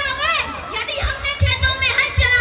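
Children's voices, several at once, talking and calling out, with repeated low thumps underneath.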